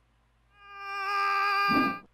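Sci-fi space-warp sound effect: a buzzing electronic drone of several steady tones that fades in about half a second in and grows louder.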